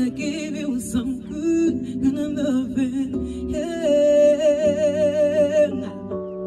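A woman's voice singing a wordless ad-lib run over sustained keyboard chords, then holding one long note with vibrato that stops just before the end.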